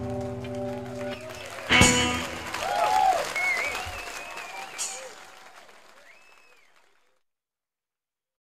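The final held chord of a live free-jazz band (two electric guitars, electric bass, saxophone, drums) rings out and stops about a second in, a last sharp drum and cymbal hit follows, then the audience applauds and cheers, and the recording fades out to silence near the end.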